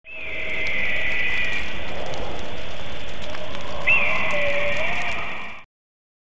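Production-company logo sound effect: a steady rushing noise under high held tones, fading in quickly and cutting off after about five and a half seconds, with a sharp rising-and-falling cry about four seconds in.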